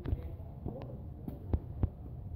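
A steady low rumble with several short, dull knocks, the loudest two close together near the end.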